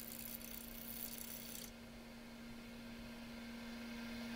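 Wood lathe spinning a maple bowl blank at about 200 RPM, a faint steady hum. The gouge cuts with a light hiss for the first couple of seconds, then the cutting stops.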